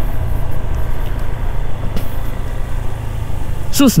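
Steady low rumble of a Honda ADV scooter being ridden along a road: engine and road noise mixed with wind buffeting the rider-mounted microphone.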